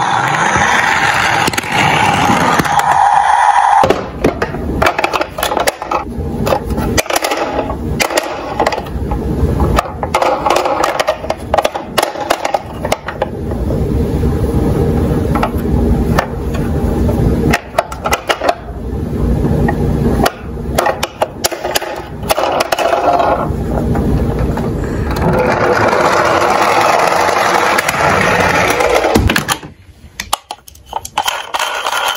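Plastic toy cars and trucks rolling down a wooden slope, their plastic wheels rumbling on the wood, with many knocks and clatters as the toys are run and handled. A steady tone sounds over the first few seconds.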